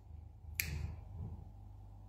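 A single short, sharp click a little over half a second in, with a faint low murmur around it, in a pause between speech.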